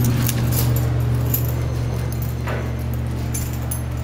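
A ring of keys jangling and clinking lightly over a steady low hum, with one short knock about two and a half seconds in.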